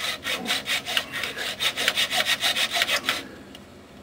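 Hand saw cutting through the metal strap holding the truck's front fuel tank, in quick, even back-and-forth strokes that stop about three seconds in.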